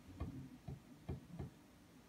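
Four soft, low knocks within about a second and a half, unevenly spaced.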